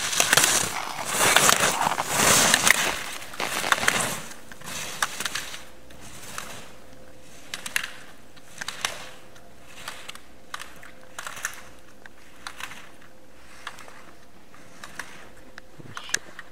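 Slalom skis carving and scraping over snow, a loud hissing scrape for the first four seconds as the skier passes close, then fainter, with scattered sharp clicks.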